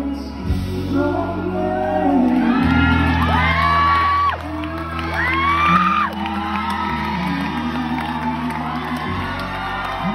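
A male and a female singer performing a duet into microphones over sustained instrumental backing, heard from the audience in a large hall. A few seconds in, high audience squeals and whoops rise over the music twice.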